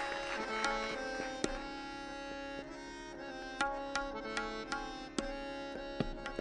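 Tabla played sparsely, with single sharp strikes spaced about a second apart, over a melodic accompaniment of long held notes that step in pitch now and then.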